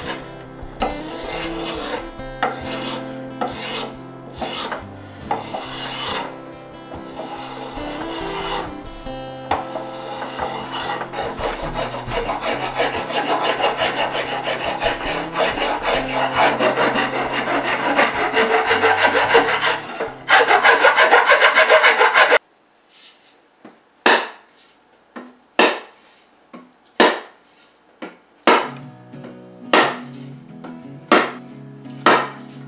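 Spokeshave shaving wood off an axe handle in repeated scraping strokes, with background music. About 22 seconds in this cuts off, and a mallet strikes the axe handle about six times, roughly once a second, as the head is pounded on.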